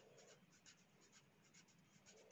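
Faint scratching of a felt-tip pen writing on paper, in a quick run of short strokes.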